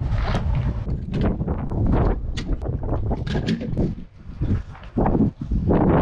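Refuelling and windscreen-washing handling noises at a van: a run of irregular short swishing and scraping strokes, two or three a second, over a low rumble of wind on the microphone.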